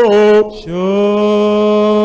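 A man singing a slow prayer song, holding long notes: one note steps down at the start, he breaks off briefly about half a second in, then holds a long, steady, lower note.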